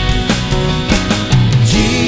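Live church worship band playing a rock-style song: electric guitars and a drum kit over sustained chords.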